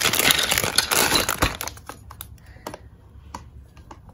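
Clear plastic packaging bag crinkling for about the first two seconds as a toy part is drawn out of it, then scattered light clicks and taps of a hard plastic toy shelf being handled.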